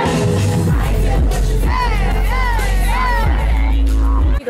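Live pop music played loud through a stage PA, a heavy bass line coming in about a second in under a sung vocal, with crowd noise mixed in.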